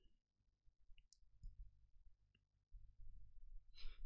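Near silence: faint room tone with a few soft, brief clicks scattered through it.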